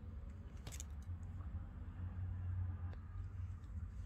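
Faint handling sounds of yarn and small metal scissors being brought up to snip the crochet yarn, with one sharp click a little under a second in and a few lighter ticks over a low steady hum.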